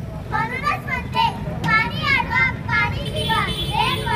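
A child's voice speaking into a handheld microphone in short, quick phrases.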